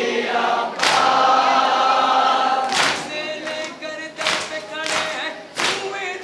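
A group of men chanting a noha in unison while beating their chests in matam. The open-hand slaps on bare chests land together: the first two about two seconds apart, then quickening to more than one a second.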